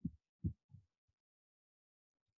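A few faint, short low thumps in the first second, then quiet.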